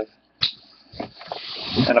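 A cardboard card case being handled and shifted on the table: a knock about half a second in, then a scraping slide with another knock about a second in, growing louder near the end.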